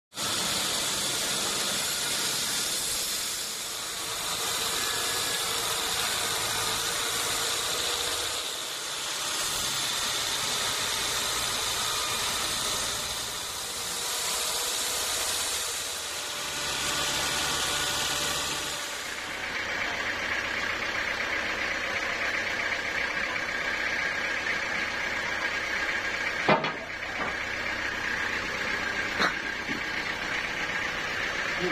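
A band sawmill running: a loud hissing saw noise that swells and fades every four or five seconds, then a steadier machine drone with a whine. Two sharp knocks come in the last few seconds, as a heavy teak log is shoved against the carriage.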